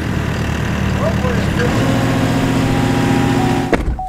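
Small excavator's engine running steadily as it works the arm and bucket, with the engine note stepping up about halfway through as the hydraulics take load. The sound cuts off suddenly just before the end.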